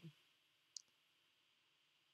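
Near silence: faint room hiss with one short, faint click about three quarters of a second in.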